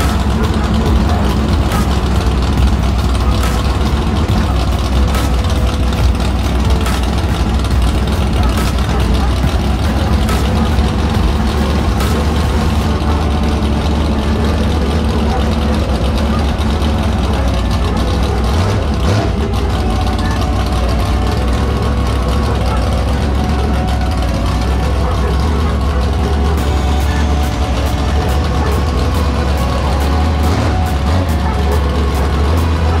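Dirt late model race car's V8 engine idling steadily.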